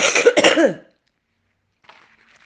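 A person coughing once, briefly, for under a second.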